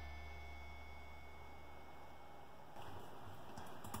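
Faint low sustained tones with a thin steady high tone, the last of a song fading out over about two seconds. Near the end come a few soft computer mouse or keyboard clicks.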